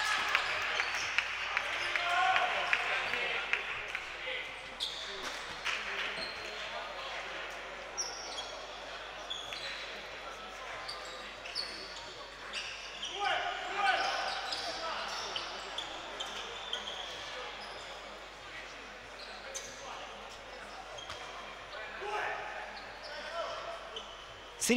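Basketball-court ambience in a large sports hall: scattered voices of players and spectators echoing, with a basketball bouncing on the hardwood floor now and then.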